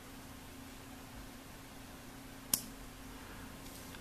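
One sharp metallic click about two and a half seconds in, over a faint steady hiss: the lid of a Corona Old Boy butane pipe lighter closing to put out its flame.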